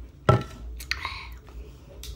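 A single loud, sharp thump about a third of a second in, as of something set down hard or knocked close to the phone. It is followed by a brief vocal sound.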